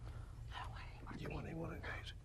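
Soft whispered and murmured speech, starting about half a second in, over a steady low hum.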